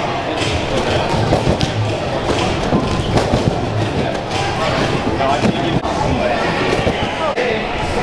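A trampoline hall's mixed noise: music and background voices, with irregular thumps of people landing on trampoline beds, echoing in the large room.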